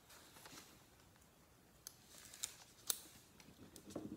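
Faint scratching of a small plastic burnishing tool rubbed over a rub-on transfer sheet on a sealed painted board, with a few sharp ticks around the middle.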